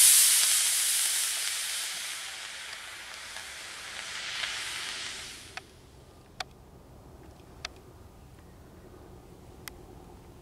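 Solid-fuel model rocket motor burning with a loud hiss as it boosts an RC glider away. The hiss fades as the model climbs and cuts off abruptly at burnout about five and a half seconds in, followed by a few faint clicks.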